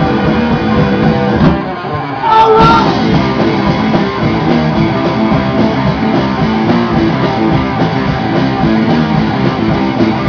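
Live heavy metal band playing a song loudly, electric guitars to the fore, with a short drop in level about two seconds in before the full band comes back.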